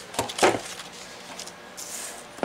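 Plastic paper trimmer set down on a craft table: two knocks in the first half-second, the second louder, then a soft rub of paper or plastic sliding near the end.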